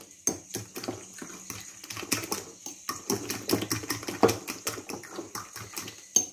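A metal fork beating eggs in a ceramic bowl: a fast, irregular run of clinks and taps of the fork against the bowl, several a second, with a wet slap of the egg.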